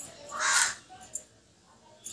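A crow cawing once, a harsh call about half a second long, with a couple of sharp clicks from a knife working a potato around it.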